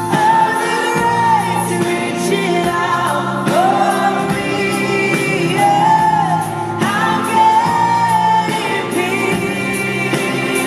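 A contemporary Christian worship song: a woman's voice sings a melody of long, sliding held notes over steady band accompaniment.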